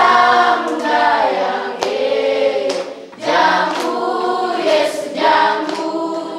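A group of schoolchildren singing together in chorus, with hand claps roughly once a second and a short break between phrases about three seconds in.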